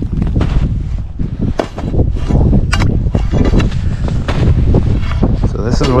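Wind buffeting the microphone, with irregular crunching footsteps in crusty snow and slushy shoreline ice.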